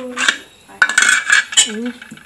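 A steel spoon clinks and scrapes against an aluminium cooking pot, with several sharp metallic knocks spread across the two seconds.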